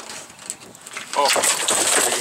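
A gar, just lifted aboard on a gaff, landing and thrashing on an aluminum boat deck: a burst of noisy slapping and scraping starting about a second in.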